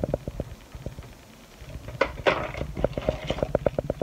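Hands handling packaged strands of beads: small clicks and rattles of the beads and card-backed packaging, with a sharper rustle about two seconds in.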